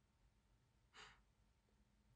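Near silence, with one brief, faint breath from the woman about a second in.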